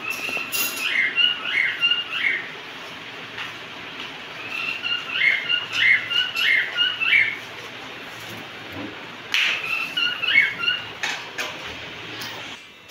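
Caged pet birds chirping in three bouts of quick, short, high calls, with brief pauses between the bouts.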